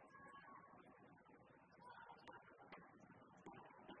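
Near silence: faint, steady murmur of an indoor arena crowd, with two faint ticks a little past halfway.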